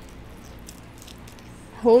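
Faint, wet chewing with a few small mouth clicks as a bite of Cajun corn on the cob is eaten close to the microphone. A voice cuts in near the end.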